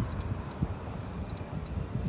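Low, steady outdoor background rumble, with a few faint ticks.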